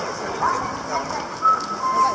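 An electronic audible pedestrian-crossing signal sounding short two-note calls, a higher note followed by a lower one, over the chatter of people crossing.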